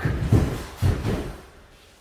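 Feet thudding on a wooden floor: three heavy low thumps within about the first second, then fading, as karateka shuffle twice and drive forward into a punch.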